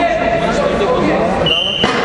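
Many spectators talking across a sports hall, with one short, high referee's whistle blast about a second and a half in, stopping the wrestling bout.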